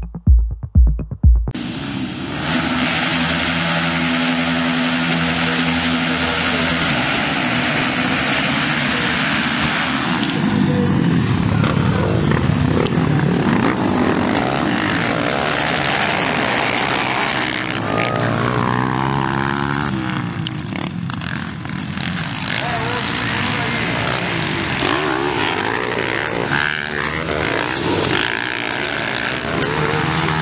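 A short electronic music beat ends about a second and a half in. After it come motocross dirt-bike engines racing, revving up and down as the bikes ride past and work the throttle over the track.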